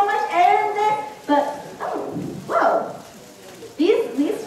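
Indistinct voices in short, broken calls and exclamations, with no clear words.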